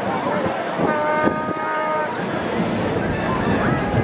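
A vehicle horn honks once, a steady held note lasting about a second, with people talking in the background.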